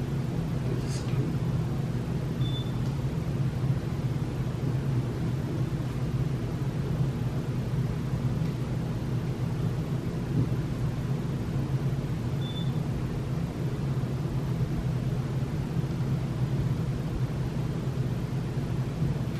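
A steady low background hum, with a single short click about a second in.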